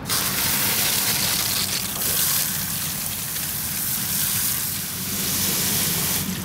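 Garden hose spray nozzle on a shower pattern spraying water into a plastic bucket packed with cedar branches: a steady rushing hiss that starts abruptly.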